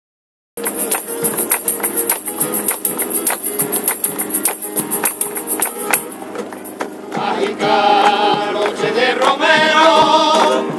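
Live romero choir music in sevillanas-style pilgrimage song. About half a second in, it starts with a rhythmic instrumental opening of regular beats and a bright high shimmer. Voices come in singing about seven seconds in.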